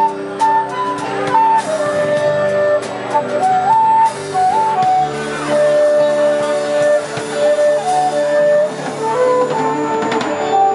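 A concert flute playing a blues solo of held notes that step up and down, over electric bass and guitar accompaniment from a live band.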